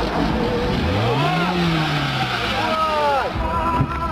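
A Lada sedan's engine revving, its pitch rising then falling over about two seconds, with people's voices over it.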